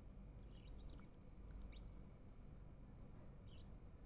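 Near silence: a low hum with four faint, brief high-pitched chirps.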